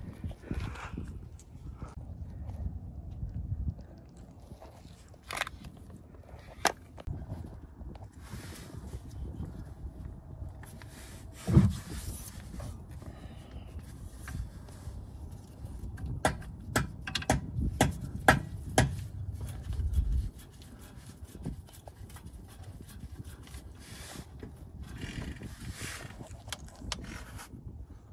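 Hand tools clicking and knocking on metal under the car while the rear differential plug is loosened with a socket. The sharp clicks come in a quick irregular run about two-thirds of the way through, over a low rumble of wind on the microphone.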